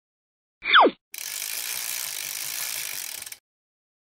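A short falling tone, then a fast, steady mechanical ratcheting lasting about two seconds that stops abruptly.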